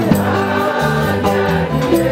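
Gospel music: many voices singing together over a low bass line that steps between notes, with light percussion keeping time.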